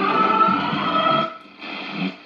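1950 General Electric Model 400 vacuum tube radio playing music from an AM station. About a second and a half in, the station drops away as the dial is turned, and a quieter signal comes in after it.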